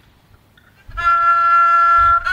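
A Thai bamboo flute (khlui) enters about a second in and holds one long, steady note, opening the piece. Before it there is only faint room noise.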